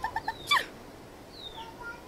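A short cartoonish logo sound effect: three quick high blips, then a falling squeak about half a second in, and a faint falling whistle-like tone near the middle.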